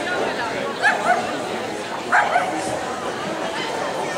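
A dog yipping in two short pairs of high calls, one pair about a second in and the other about two seconds in, over a steady murmur of crowd chatter.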